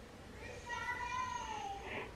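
A woman yawning aloud: one drawn-out, high-pitched voiced note of about a second and a half that drops in pitch at its end.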